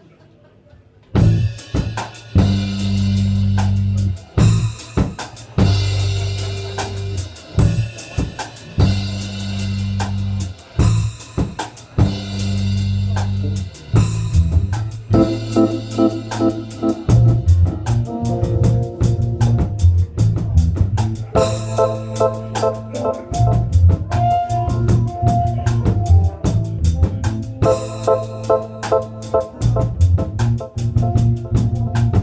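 Live band of electric guitar, electric bass and drum kit starting a song about a second in: held bass notes and drum hits in short blocks with breaks between, then from about halfway a steady groove with guitar notes over it.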